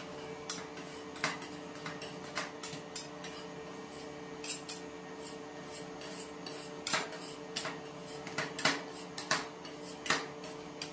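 Two metal spatulas clicking and scraping on a steel ice-cream-roll cold plate as they chop banana into the cream base, in irregular strikes that come thicker near the end. A steady hum runs underneath.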